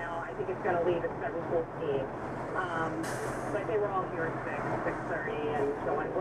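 Talk-radio speech playing inside a truck cab over the truck engine's steady low hum, with a short hiss about three seconds in.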